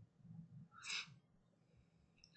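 Near silence: a pause in a webinar microphone feed, with one faint short breath about a second in.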